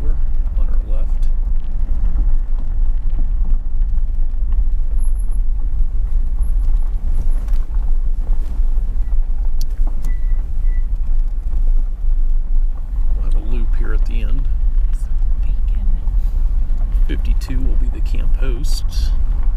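Steady low rumble of a vehicle driving slowly along a gravel road: engine and tyre noise.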